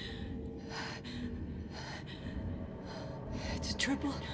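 A woman breathing hard in short, repeated gasps, over a steady low rumble, with a quick falling whistle-like glide near the end.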